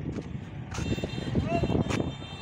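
Steady rumble of highway traffic, with a short voice heard about one and a half seconds in.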